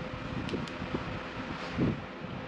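Background room noise with a faint steady hum, two light clicks about half a second in and a low thump near the end.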